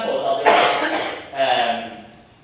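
A single cough about half a second in, breaking up a man's lecture speech.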